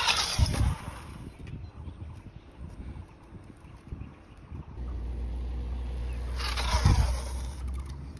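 A child's bicycle tyre skidding on concrete under hard braking: a short scraping hiss right at the start, quieter rolling between, and a second, longer skid about six and a half seconds in.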